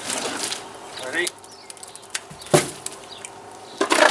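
Shovel blade scraping and scooping cow muck off the farmyard surface in short strokes, the loudest about two and a half seconds in.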